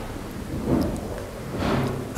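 Steady low room rumble and hiss, with two faint, brief vocal sounds from a man, one under a second in and one near the end.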